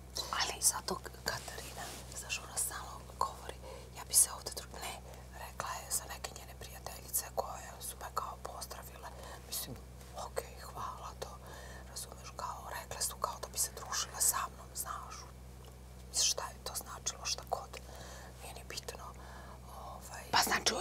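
Two women whispering to each other in hushed, hissy bursts, over a steady low electrical hum.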